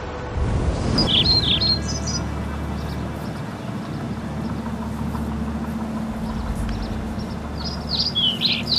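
Birds chirping in short quick phrases, about a second in and again near the end, over a steady low rumble of outdoor background noise.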